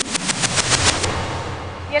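Game-show sound effect for the round's title graphic: a fast rattle of sharp clicks, about a dozen a second, for roughly the first second, then a fading rumbling wash.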